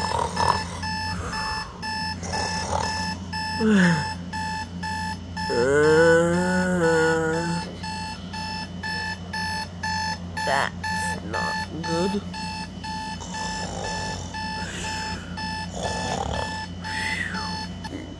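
Digital alarm clock beeping in quick, evenly repeated electronic bursts, played from a tablet's speaker.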